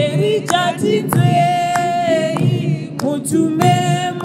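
Two women singing a gospel song together, with long held notes.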